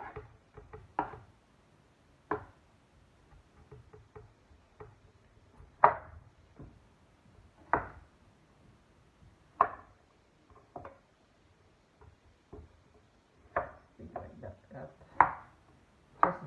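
Kitchen knife chopping potatoes on a cutting board: sharp, single knocks at uneven intervals of one to two seconds.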